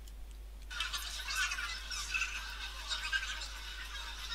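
Sped-up playback of an outdoor street recording, made with Cinelerra's Resample RT effect: high-pitched, thin chatter of people talking, with nothing in the low range. It starts about a second in.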